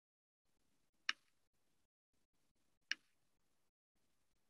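Near silence broken by two short, sharp clicks about two seconds apart, the first about a second in and the second near three seconds.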